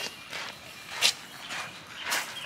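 Footsteps crunching on a dirt and gravel path, a few steps with the loudest about a second in.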